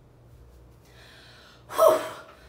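A woman breathing during a guided breathing exercise: a soft audible in-breath about a second in, then a short, loud, sharp gasp-like breath out with some voice in it near the end.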